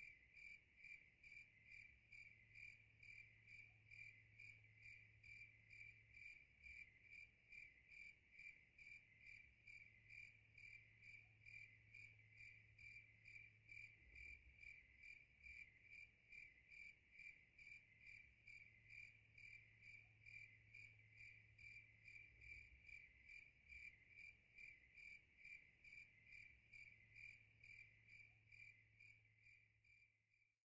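Faint night chirping of crickets: one pitch repeated evenly, about two chirps a second.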